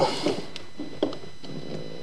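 Faint handling noise: a few soft clicks and rustles as a small GPS receiver and its cable are handled, the clearest about half a second and a second in, over a steady low hiss.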